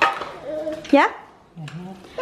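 A single clunk of a metal baking tray set down or handled on a kitchen counter at the very start, followed by short bits of speech.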